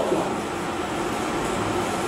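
Steady background noise: an even hiss with a faint low hum, holding level and unchanging.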